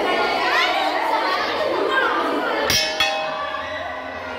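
Hanging brass temple bell struck twice by its clapper, the strokes close together near the end, then ringing on with a steady tone that slowly fades. Chatter and children's voices run underneath.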